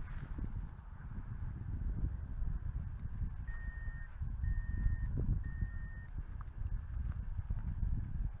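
Wind buffeting the microphone in gusts, with three short, identical high beeps about a second apart near the middle.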